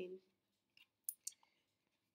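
Near silence broken by three faint, short clicks in quick succession, about a second in.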